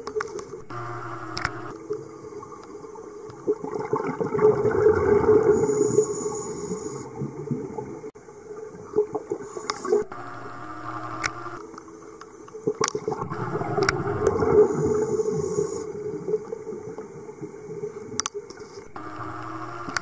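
Scuba regulator breathing heard underwater. A high hiss of inhaling is followed by a long gurgling burst of exhaled bubbles, twice about nine seconds apart, with a few sharp clicks between.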